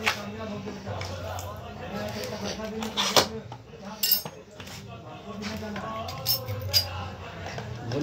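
Hands handling a cardboard pizza box on a plastic bag, with scattered sharp clicks and rustles as the box is turned and its sealing tape picked at; a steady low hum runs underneath.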